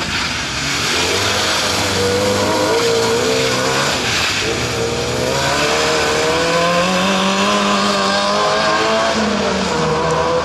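Fiat Seicento rally car's engine revving hard as the car accelerates. The revs climb, dip briefly about four seconds in, climb again for several seconds, then fall away near the end.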